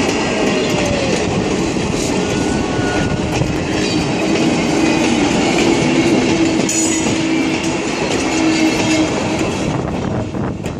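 Wooden-bodied passenger carriages of a heritage steam train rolling past close by, their wheels clattering and rumbling on the rails. A steady squealing tone from the wheels joins in a few seconds in and fades before the end.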